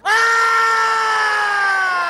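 Cricket fielders' loud appeal to the umpire: one long shout that starts suddenly and slowly falls in pitch, over stadium crowd noise.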